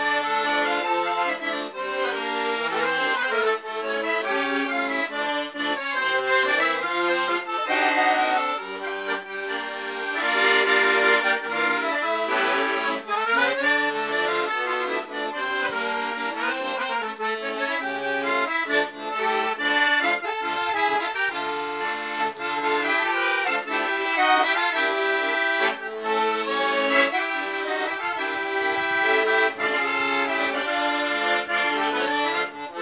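Piano accordion played solo: a melody over chords, going on without a break.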